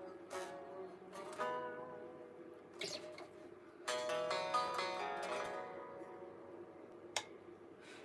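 Electric guitar played quietly: about four notes or chords picked one at a time, each left to ring out and fade, as a tune is picked out by ear. A small click near the end.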